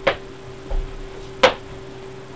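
Two sharp clicks about a second and a half apart, with a faint low bump between them, over a steady electrical hum.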